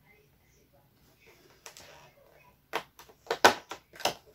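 A cardboard chocolate advent calendar door being opened: a faint rustle, then a quick run of sharp cardboard and packaging cracks and clicks in the second half as the door is torn out.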